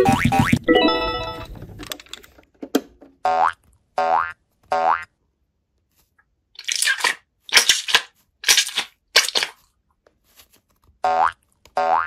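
Cartoon boing sound effects: short springy pitch glides, three in quick succession and two more near the end, after a louder sliding tone at the start. In the middle comes a run of four short noisy bursts.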